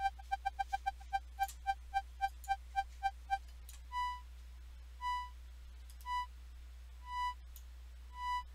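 Bitwig Studio's Organ instrument sounding one held tone that the Beat LFO pulses into short repeated beeps: a quick run that slows and stops about three seconds in. Then, with the LFO settings changed, a higher, longer beep comes about once a second.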